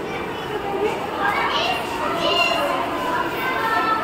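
Children chattering and calling out, several voices overlapping.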